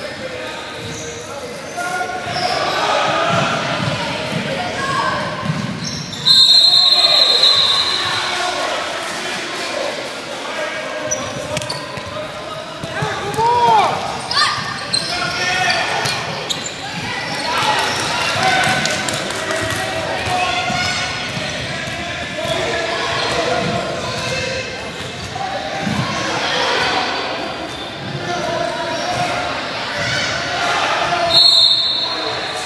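Youth basketball game in an echoing gymnasium: a basketball bouncing on the hardwood floor amid players' and spectators' shouts and calls. A short shrill high tone sounds about six seconds in.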